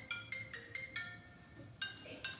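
Faint music: a quick melody of short, bell-like mallet notes, several a second, pausing briefly past the middle before going on.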